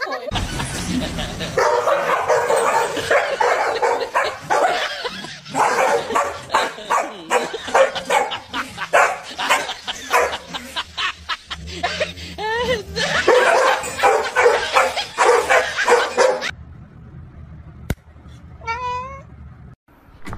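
Dogs barking and yipping in quick, loud runs for most of the stretch, then a short wavering high call near the end.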